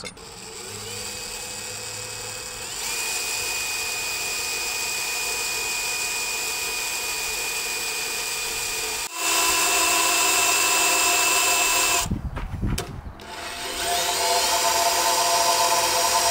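Cordless drill boring 3/16-inch pilot holes through the camper box's metal side wall. A steady motor whine steps up in pitch about three seconds in and turns into a higher, louder whine after about nine seconds. It breaks into a few short bursts around twelve seconds, then spins up again near the end.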